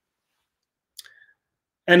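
Dead silence broken by a single short click about a second in, followed by a brief faint tone; a man's voice starts again near the end.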